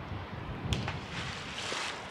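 A thrown rock splashing faintly into the river far below near the end, over a steady background of moving water and wind. A faint sharp click comes under a second in.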